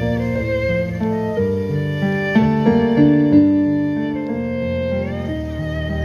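Violin playing a melody over keyboard accompaniment, with held notes and vibrato.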